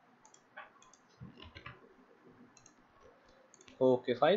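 Faint, scattered clicks of a computer mouse, some in quick pairs.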